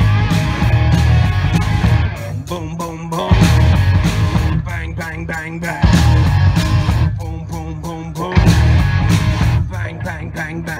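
Live rock band playing an instrumental break in stop-time: the full band with bass and drums hits, then drops out about every two and a half seconds, leaving an electric guitar lick with bent notes in each gap.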